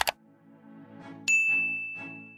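Subscribe-button animation sound effect: a sharp double click, then about a second later a single bright notification-bell ding that rings on steadily, over a soft low music pad.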